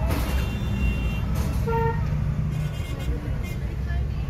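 Steady low rumble of a car driving, heard from inside the cabin, with a short steady tone a little before two seconds in.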